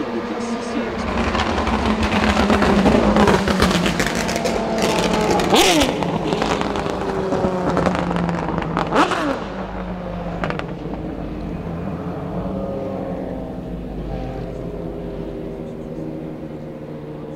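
Aston Martin DBR9 GT1's 6.0-litre V12 race engine passing close and braking for a slow corner: the note swells, then falls in pitch, with sharp downshifts about five and a half and nine seconds in. It then runs at lower revs through the corner.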